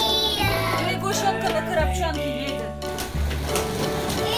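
Children's music playing, its bass notes changing every second or so, with a voice over it.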